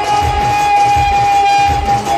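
Chhattisgarhi jasgeet devotional music: one long, steady held high note over a regular low drum beat.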